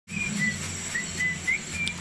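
Small caged birds giving short, clear whistled chirps, about six in two seconds, some rising slightly in pitch, over a steady low hum.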